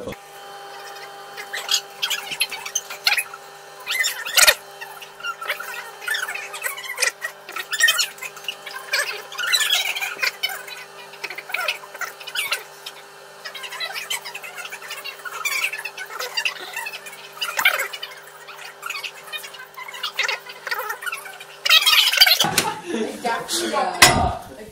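Sanyo microwave oven running with a steady hum while it heats jelly to melt it, with scattered small clicks over it. The hum cuts off near the end and a louder burst of noise follows.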